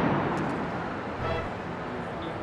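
The fading tail of a loud boom-like burst of noise, dying away over about a second and a half.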